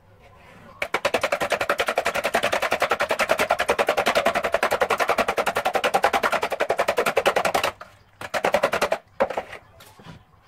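Raw eggs being beaten with a spoon in a plastic bowl: a long run of rapid, even strokes that stops about eight seconds in, then a shorter burst.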